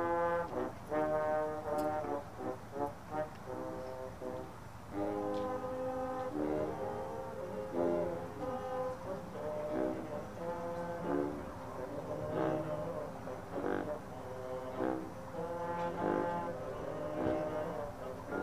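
High school marching band brass section playing: short, clipped notes for the first few seconds, then longer held chords.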